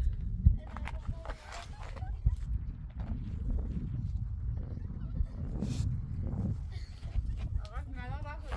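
Talking at a distance over a low, uneven rumble, with scattered knocks and clicks.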